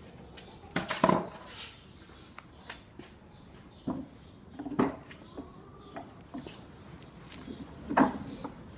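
Irregular knocks and clatters of steel pins and wooden parts being handled on a wooden lever-driven block press, as the pins are pulled to release the compressed block. The loudest cluster of knocks comes about a second in.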